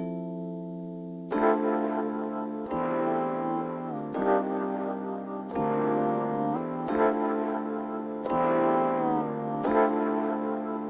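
Keyboard chord samples from BandLab's RnB Creator Kit V.1, triggered from the Alesis V125's drum pads. Each pad strike starts a new held chord, with a sharp attack about every one to two seconds.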